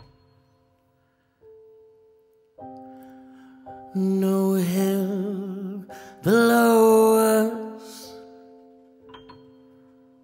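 A slow ballad: soft keyboard chords played sparsely, then a man singing two long held notes with vibrato over them. The second note, about six seconds in, scoops up in pitch and is the loudest, and the chords ring on and fade near the end.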